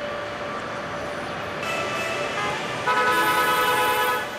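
Busy city street noise of traffic, with vehicle horns sounding. One horn comes in about one and a half seconds in, and a louder horn is held from about three seconds in.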